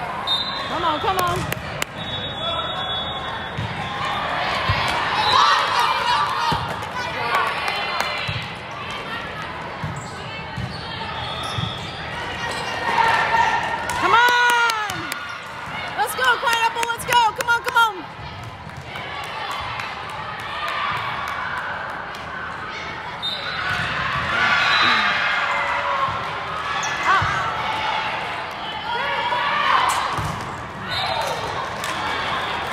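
Volleyball rally on an indoor sport court in a large, echoing hall: the ball being struck and hitting the floor, sneakers squeaking, and players calling over a constant background of voices. A short, steady, high whistle sounds about two seconds in.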